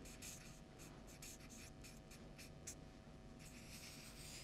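Marker drawing on flip-chart paper: faint, short, irregular scratching strokes, thinning out after about three seconds.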